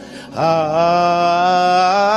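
A man singing gospel solo into a microphone. After a brief pause for breath at the start, he scoops up into one long held note.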